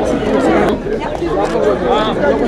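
Crowd chatter: many people talking over one another at once, none of it clearly picked out.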